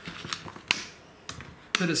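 Plastic bottles handled and set down on a wooden tabletop: a few light clicks and knocks, one sharper click about a third of the way in.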